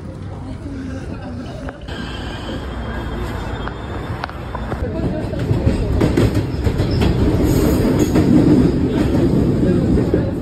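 Kyiv Metro train running, heard from inside the carriage: a dense low rumble that grows louder over the last several seconds. The first couple of seconds are street ambience before the cut to the train.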